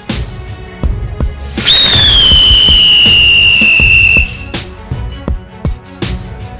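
A ground firecracker gives a loud, shrill whistle for about two and a half seconds, starting about a second and a half in. Its pitch drops quickly at first and then holds, with a hiss underneath. Background music with a steady beat plays throughout.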